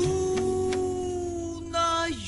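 A woman's voice holding one long sung note in a Peruvian criollo song, over acoustic guitar accompaniment with a few plucked notes underneath.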